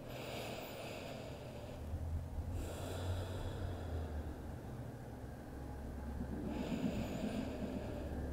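Slow, deep breathing through the nose, picked up close on a clip-on mic: soft hissing breaths that swell and fade about three times, over a faint low room hum.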